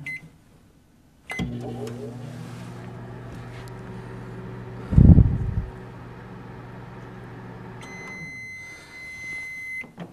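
Admiral microwave oven starting with a click and a short beep, then running with a steady electrical hum; a dull thump sounds near the middle. The hum stops near the end and the oven's end-of-cycle tone sounds for about two seconds.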